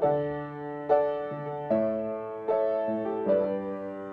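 Upright piano played slowly and gently: a chord with a low bass note struck about once a second, each left to ring and fade before the next.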